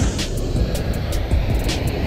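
Steady rushing of river water pouring over a dam spillway, with a heavy low rumble.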